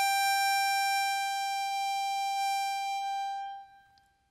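A single long high note on a musical instrument, held steady and slowly fading, stopping a little before the end.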